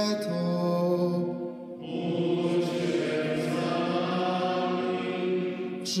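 Slow sung chant with long held notes, a new phrase beginning about two seconds in: liturgical litany-style singing used as closing music.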